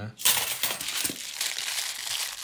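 Plastic coin bag crinkling as it is handled and opened, starting suddenly just after the start and going on steadily.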